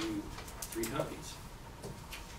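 Paper rustling and light handling clicks on a table, with a brief low murmured voice sound about a second in, in a small room.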